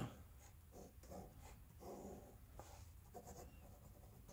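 Faint pen strokes on notebook paper: several short scratches of a pen drawing and writing on the page.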